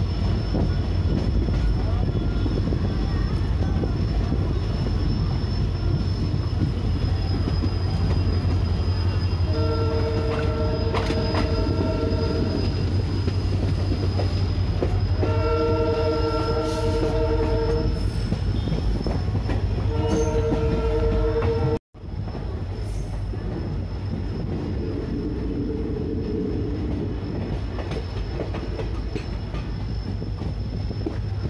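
Passenger train running along the track, heard from the coach side, with a steady low rumble of wheels on rail. The locomotive horn sounds three long blasts, the last cut off by a sudden break in the sound, and a fainter horn follows a few seconds later.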